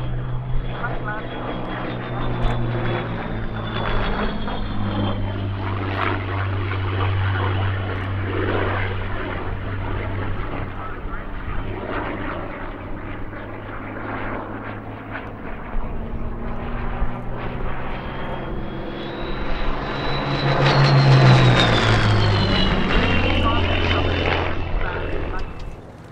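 Supermarine Spitfire's V12 piston engine running through an aerobatic display, its pitch shifting as the aircraft manoeuvres. About twenty seconds in it grows loudest in a close pass, the pitch dropping as it goes by.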